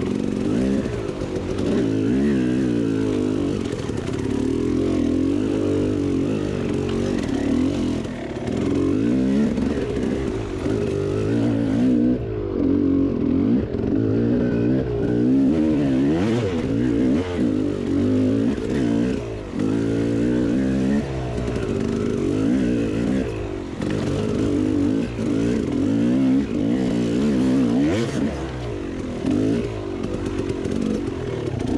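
KTM two-stroke enduro dirt bike engine, revving up and down continually as the throttle is worked. A few sharp knocks from the bike over the rough ground break through.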